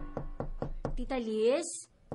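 Knocking on a house door, quick even knocks about five a second, then a woman's voice calls out briefly about halfway through.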